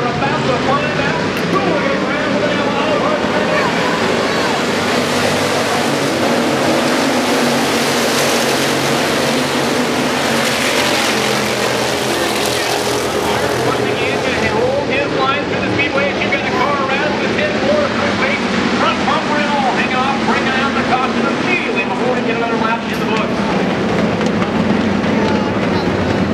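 Hobby stock race cars running together on a dirt oval, a steady mix of several engines, swelling louder for several seconds in the middle as the pack comes past.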